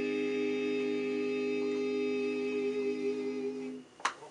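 Male barbershop quartet holding the final chord of the song in four-part a cappella harmony, one long steady chord that cuts off just before the end.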